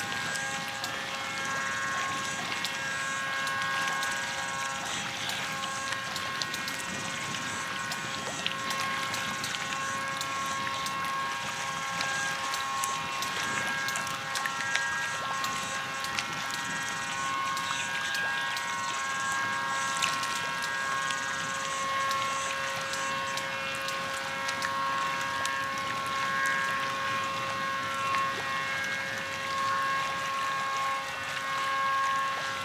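Wind and water ambience beside a choppy bay, with a steady hum of several held tones underneath, like a distant engine.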